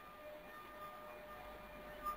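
Faint room tone: a low hiss with a thin, steady whine underneath.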